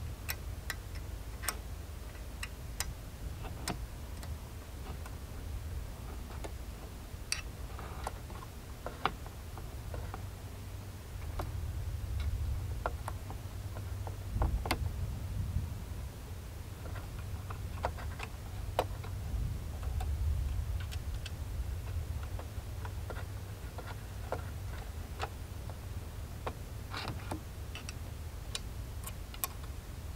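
Irregular light clicks and taps from a tool working the clamp bolts of a chainsaw mill fitted to a chainsaw bar, over low steady background noise.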